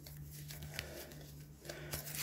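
Faint rustling and a few soft clicks of playing cards being thumbed through a deck, over a low steady hum.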